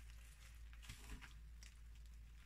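Near silence: faint room tone with a steady low hum and a few soft handling noises about a second in, from gloved hands pressing wet, resin-soaked fabric onto a mould.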